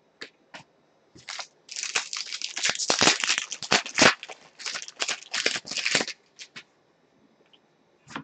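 Foil wrapper of a trading card pack crinkling and tearing as the pack is ripped open by hand: a dense run of crackles starting about a second and a half in and stopping about two seconds before the end.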